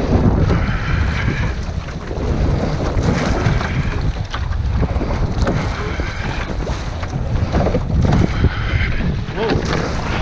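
Wind buffeting the microphone of a rowing boat on choppy open sea, over water washing and splashing against the hull. A swish comes about every two and a half seconds with the rowing strokes. Near the end a wave slaps against the side of the boat.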